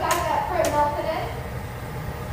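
Steady low rumble of a glassblowing hot shop's gas-fired furnaces and bench torch, with two sharp metallic clinks about half a second apart in the first second.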